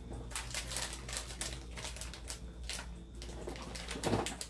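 Irregular rustling and scratchy clicks of a cloth being rubbed and crumpled in the hands while wiping.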